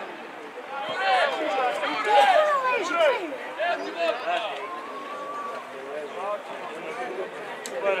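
Voices calling out and talking over one another, with one call held for about half a second around five seconds in.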